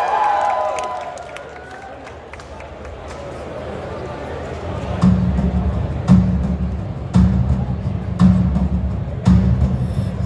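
Crowd murmur from a concert audience, then about halfway through a band's live drum kit starts a steady kick-drum beat with bass, about one beat a second, opening the next song through the PA.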